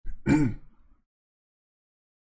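A man clearing his throat once into a close microphone, a short burst lasting about a second.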